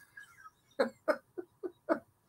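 A man's quiet laughter: a run of five short chuckles, starting a little under a second in.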